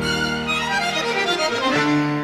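Tango music: a bandoneón plays a short instrumental phrase of held notes, with a run of quicker notes in the middle.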